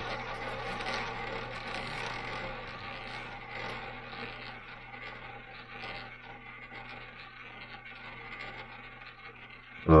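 Roulette ball rolling around the ball track of a spinning double-zero roulette wheel: a steady rolling whir that slowly grows quieter.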